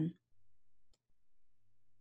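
A single faint computer mouse click about a second in, over near-silent room tone with a faint low hum.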